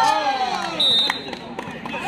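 Men's voices shouting, the calls sliding down in pitch, with a short high steady tone about a second in and a single knock just after it.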